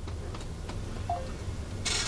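School bus engine idling with a steady low hum, with a few faint ticks and one short, faint beep a little past halfway.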